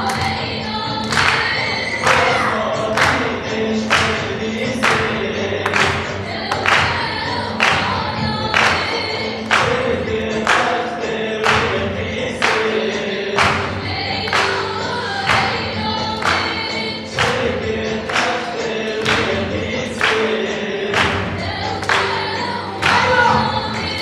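Kurdish folk dance song: voices singing over a strong, regular beat that strikes about once a second.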